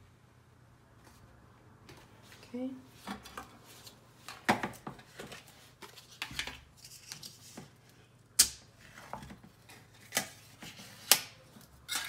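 Plastic lid pulled off a metal can of ground coffee and the foil seal peeled away: a run of sharp clicks, snaps and crinkles, with the loudest snaps in the second half.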